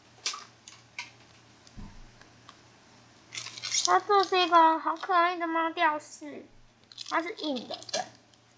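A clear plastic wrapper crinkles and rustles in a few short clicks as it is handled in the first three seconds. A high-pitched voice then talks through the rest, the loudest sound present.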